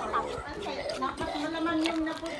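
Voices with speech-like chatter, then a held hum in the second half.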